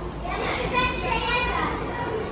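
A young child's high-pitched voice, a brief wordless squeal or babble lasting about a second, over a low steady background hum.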